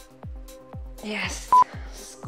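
Electronic workout music with a kick drum about twice a second, and one loud, short, high beep about one and a half seconds in: an interval timer's countdown beep marking the last seconds of an exercise.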